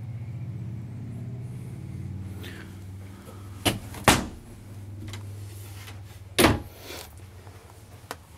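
Sharp knocks and clicks of a louvered wooden closet door being handled and shut: two about four seconds in, a louder one about six and a half seconds in, then a lighter one. A low steady hum runs underneath.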